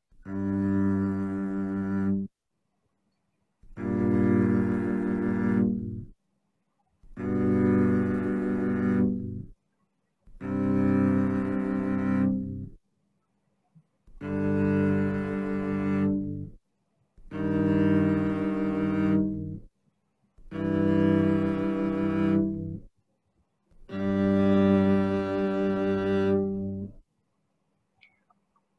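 Eight held string tones played one after another, each about two and a half seconds long with a short gap between them: the harmonic divisions of a monochord string within the octave (5/6, 4/5, 3/4, 2/3, 5/8, 3/5, 1/2), each sounding the whole string with its two divided parts together. In sequence they approximate the musical scale.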